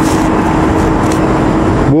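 Loud, steady road traffic close by: engine and tyre noise of vehicles on the highway, with a faint steady drone running through it.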